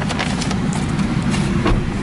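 Paper bag rustling and crinkling close to the microphone as corn ears are handled inside it, in a run of irregular crackles over a steady low rumble.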